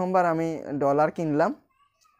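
A man's voice making several drawn-out sounds with sliding pitch and no clear words, stopping about a second and a half in.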